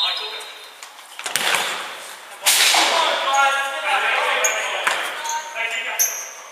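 A futsal ball struck on an indoor hardwood court about a second in, then loud shouting from players that echoes in the hall. Short high shoe squeaks come off the wooden floor near the end.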